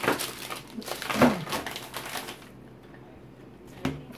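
Rustling and handling of food packaging, with light clicks and crinkles, as the next item is taken out. A short murmur comes about a second in, and a sharp click just before the end.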